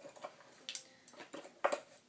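Small metal nail tools clicking and clinking against each other and a plastic storage box as they are picked out: a few sharp clicks, the loudest a little before the middle and two close together near the end.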